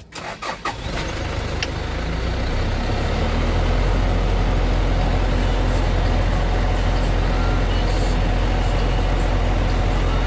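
2007 UD truck's diesel engine being started right after a fuel filter change: a few cranking strokes in the first second, then it catches. It runs, growing louder over the next few seconds as the revs come up, then holds steady.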